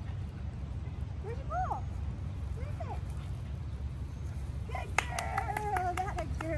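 A woman's high-pitched encouraging calls to a puppy: a few short rising-and-falling calls, then a sharp click about five seconds in and a longer run of praise near the end, over a steady low outdoor rumble.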